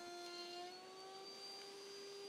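Router table's router spinning a chamfer bit as a wooden frame is fed past it, heard faintly as a steady high whine; the pitch shifts slightly about two-thirds of a second in.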